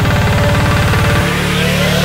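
Progressive psytrance track: a fast rolling synth bassline, changing about a second in to a held bass note under a rising synth sweep.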